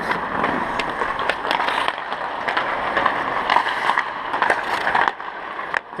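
Ice hockey skate blades gliding and scraping on rink ice, with scattered sharp clicks and knocks.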